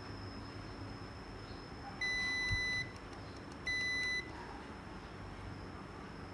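Two electronic beeps, each a single steady high tone. The first lasts under a second, and the second, shorter one follows about a second after it ends.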